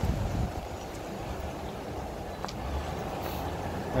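Outdoor wind rumbling and buffeting on the camera microphone, a steady low noise.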